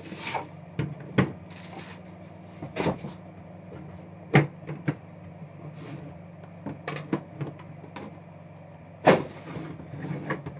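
Plastic shrink-wrap crumpled off a cardboard trading-card hobby box, then the box lid lifted and the inner box handled and set down on a tabletop: a run of irregular rustles, knocks and scrapes, the loudest knocks about four and nine seconds in. A steady low hum runs underneath.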